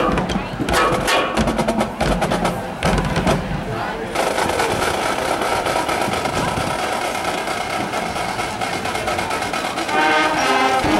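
High school marching band drumline playing a percussion break between brass passages: sharp, rhythmic snare and rim strikes for about the first four seconds, then denser, continuous drumming.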